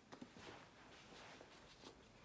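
Near silence, with a few faint ticks and rustles of someone moving and handling light objects.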